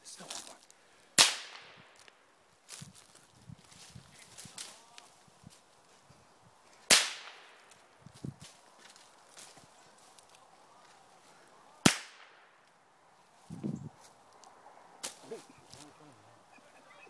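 Three gunshots from a hunting long gun, sharp cracks about five seconds apart, each followed by a short echo, with faint rustling and small clicks in between.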